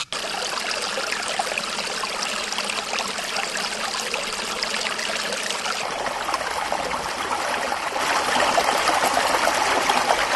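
Water running and trickling steadily: irrigation water from a pond flowing through a channel into a rice field. It grows a little louder near the end.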